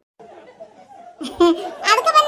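A cartoon character's high-pitched, sped-up voice laughing, starting about a second and a half in after a faint low murmur.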